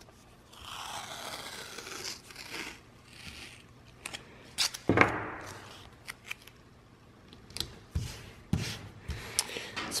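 Masking tape being pulled off the roll for about three seconds, then torn off with a sharp rip about five seconds in. Light taps and rustles follow as the tape is pressed onto a cardboard template.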